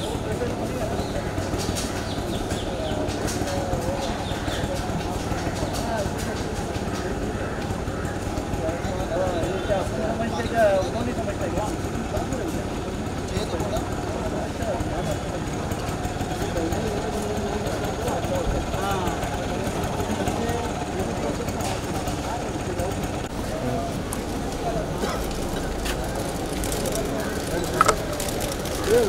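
Indistinct chatter of many people talking at once over a steady low hum, with a single brief knock about ten seconds in.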